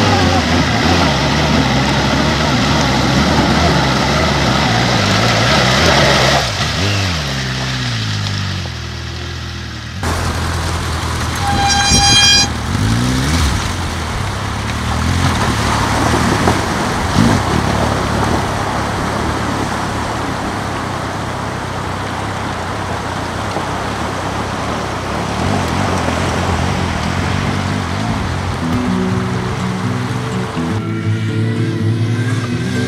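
Motorcycle-and-sidecar engine running and revving as it wades through river fords, with water splashing and rushing around it. A short horn toot comes about twelve seconds in.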